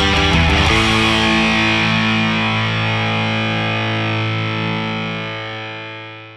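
Two distorted electric guitars over a rock backing track finish a fast passage, then a final chord is struck about a second in and left ringing, slowly fading.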